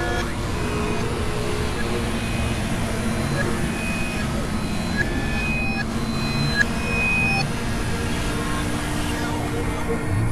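Experimental electronic synthesizer noise piece: a dense, steady wash of noise and drone with short held tones appearing and vanishing at different pitches, and a brief click about two-thirds of the way in.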